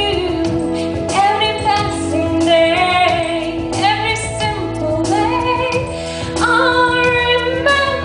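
A woman singing a song into a microphone over instrumental accompaniment, her voice gliding between notes above steady sustained chords.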